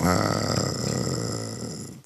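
A man's drawn-out, low, creaky hum of hesitation in the middle of a sentence, fading steadily away over about two seconds.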